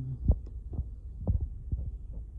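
Handling noise on a handheld phone's microphone: four dull low thumps, the first the loudest, over a steady low rumble.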